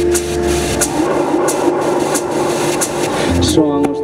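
Electronic hip hop backing track from a live DJ setup: a held synth chord that drops out about a second in, giving way to a murky, voice-like passage, with a deep bass note and a new chord coming in near the end.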